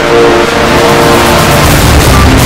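Broadcast logo sting sound effect: a loud rushing whoosh that swells in the high end, over a held chord that fades out a little past a second in.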